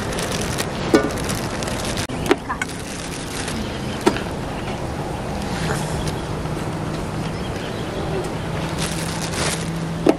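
French toast sticks and sausage sizzling on a hot portable propane griddle, a steady hiss, with a few light clicks and rustles as food is laid down. A low steady hum joins about five and a half seconds in.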